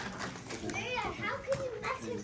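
A small child's high voice, sounding a few times with no clear words.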